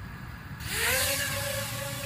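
Onagofly nano quadcopter's motors spinning up for takeoff about half a second in: a rising whine that levels off into a steady whine, with a loud rush of propeller noise as the drone lifts off.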